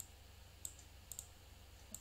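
Computer mouse clicking faintly, about five sharp clicks in two seconds: one at the start, one just past halfway, a quick pair a little after, and one at the end. A low steady hum runs underneath.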